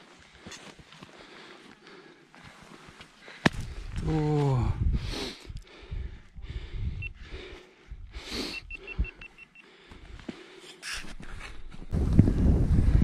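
Climbers' boots and ice axes crunching into hard snow on a steep ascent, faint at first; from about three and a half seconds in, wind buffets the microphone in gusts, with a short falling grunt of a voice about four seconds in.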